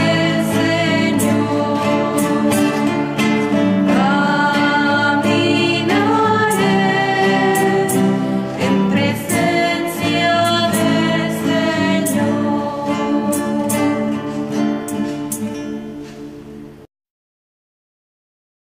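Women's voices singing a Spanish religious song together, accompanied by two strummed acoustic guitars. The song fades out near the end and stops, leaving silence.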